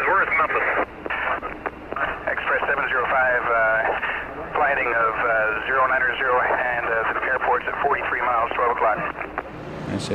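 Speech over an aircraft radio link: a recorded exchange between air traffic control and the crew, the voices thin and narrow like a telephone line.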